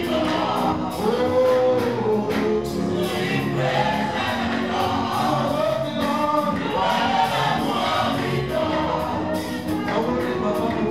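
Live gospel worship song: a male lead singer on a microphone with women's backing vocals, over instrumental accompaniment with a steady beat.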